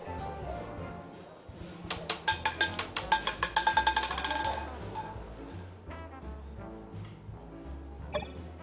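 Background music with a steady bass line. About two seconds in comes a fast rattling run of clicks with a ringing tone, lasting roughly three seconds: the roulette ball bouncing over the spinning wheel's pockets before it settles.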